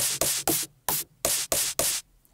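The soloed noise layer of a resynthesised dubstep snare sample, played about seven times as short hissy snare hits. The noise is still pitched up as the keys move up the keyboard, because its key follow has not yet been turned off.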